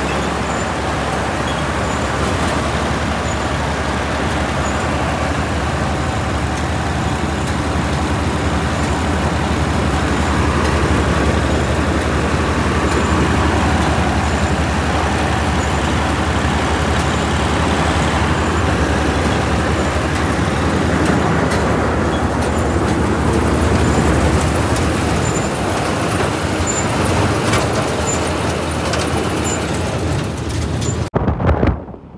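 Vishal Brisk combine harvester running at working speed in a rice paddy, its engine and threshing machinery making a loud, steady mechanical din.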